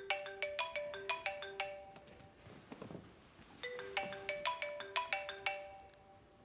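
Mobile phone ringtone: a short melody of quick struck notes, played twice with a pause of about a second and a half between.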